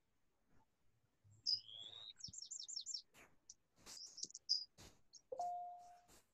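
Songbirds chirping: a rising whistle, then a quick run of about five chirps, then scattered chirps, faint through a video-call microphone. A short steady tone comes in near the end.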